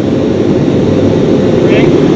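Steady, loud roar of a running forge heating the damascus billet, with no breaks or changes.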